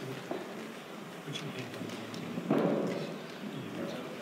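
Low background murmur of a banquet hall, with a sudden dull thump about two and a half seconds in that fades away over about a second.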